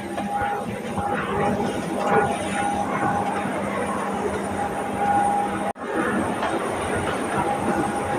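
Steady mechanical hum of a parked airliner, with two held tones, under passengers' chatter as they leave the aircraft. The sound cuts out abruptly for an instant about three-quarters of the way through, then carries on.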